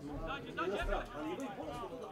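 Several voices talking and calling out over one another at a football pitch, the chatter of players and onlookers picked up by the camera's microphone.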